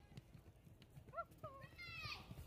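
Faint low thumps, with two short high-pitched voice sounds that rise and fall about a second in and a voice starting near the end.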